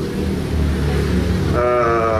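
A steady low rumble, then near the end a man's drawn-out 'uhh' of hesitation into a handheld microphone.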